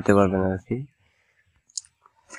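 A man's voice ending a sentence in the first second, then quiet broken by one short, faint click near the end.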